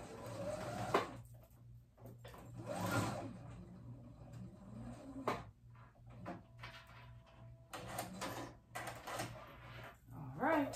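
Sewing machine stitching a straight stay stitch in short runs, with pauses and small clicks between as the fabric is turned at the point of the V.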